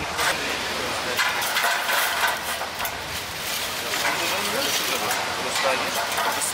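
Overlapping chatter of several people talking at once in a busy crowd, with no single voice standing out.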